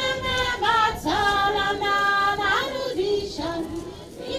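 Voices singing a slow melody, with long held notes.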